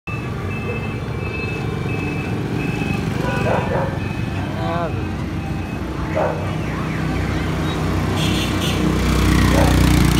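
Motorbike engines running on a busy road, with short snatches of people's voices. A motorized three-wheeler cargo vehicle's engine grows louder toward the end as it approaches.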